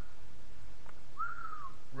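A single short whistle-like note about a second in that rises briefly and then slides down, lasting about half a second, just after a faint click.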